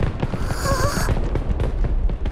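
Fireworks-style magic burst in the sky: dense crackling and popping over a low rumble, with a short wavering tone about half a second in.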